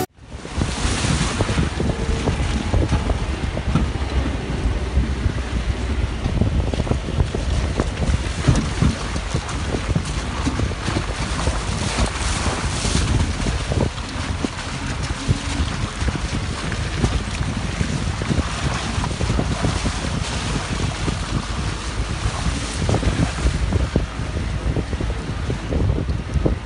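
Wind buffeting the microphone from a moving vehicle's side window, over the rumble of tyres on a rutted dirt road, with frequent knocks and rattles as the vehicle jolts over the ruts.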